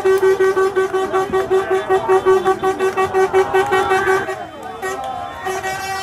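A horn sounding in rapid short blasts, about five a second, over a crowd of fans shouting and chanting; the honking breaks off about four and a half seconds in and starts again near the end.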